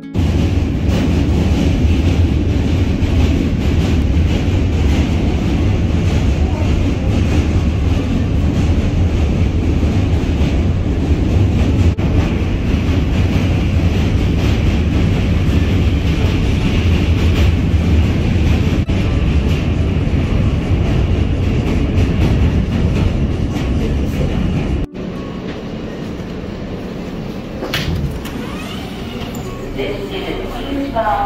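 Subway train crossing the Manhattan Bridge, heard from inside the car: a loud, steady rumble of wheels on the rails. About 25 seconds in it cuts abruptly to quieter subway-station noise.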